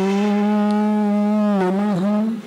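A woman's voice chanting one long held note at a steady pitch, wavering slightly near the end.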